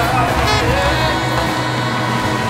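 Live rock music from a jazz big band and choir holding a long, sustained chord, with one wavering voice or horn line on top.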